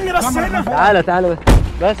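Men's raised, agitated voices, with one sharp, loud bang about one and a half seconds in.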